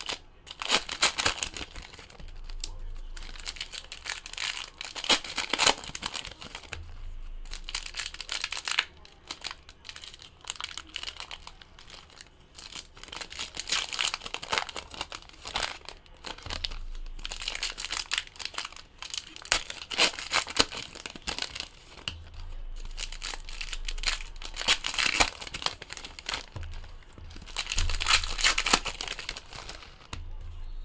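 Foil-type wrappers of Donruss Optic football card packs crinkling and tearing as packs are opened and the cards handled, in repeated bouts of crackly rustling.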